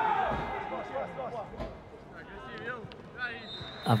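Football pitch sound in a nearly empty stadium: a few distant shouts from players and a faint thud or two of the ball.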